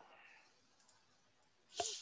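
Computer mouse clicks over quiet room tone: a faint click right at the start and a short, louder click about two seconds in.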